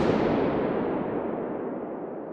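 Reverberation tail of a balloon pop recorded inside Hagia Sophia: a dense wash of echoes from the marble interior that follows the sharp pop and fades slowly, the high end dying away first. It is the recorded impulse response used to capture the building's acoustics.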